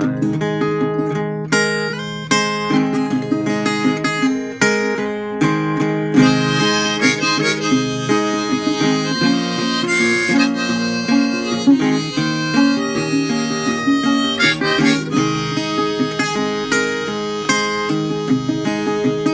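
Harmonica played from a neck holder, a melody over strummed acoustic guitar chords in an instrumental break of a folk song.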